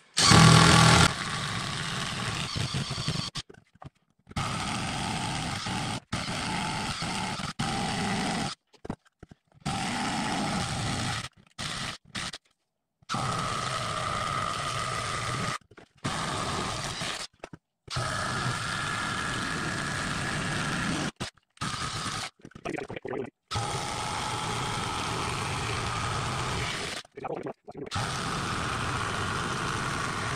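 Small Ridgid cordless drill boring through wooden boards with a 1½-inch Irwin spade bit: a steady motor whine with the cutting noise, in several runs of a few seconds each, stopping abruptly between holes.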